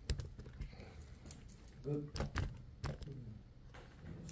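Scattered light clicks and taps, several in a row at the start and a few more later, with a brief murmur of a voice near the middle.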